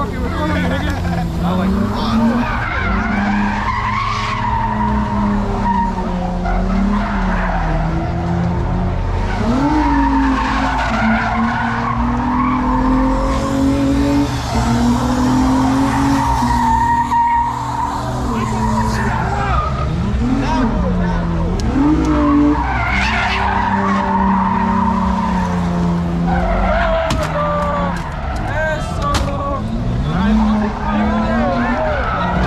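A car engine revving up and down over long stretches while its tires squeal in a street-takeover burnout, with crowd voices over it.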